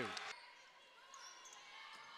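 Faint basketball-game ambience in a gym, with a few faint high squeaks about a second in, after a commentator's voice cuts off at the start.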